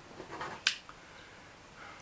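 A single sharp click about two-thirds of a second in, followed by a fainter click, over quiet room tone.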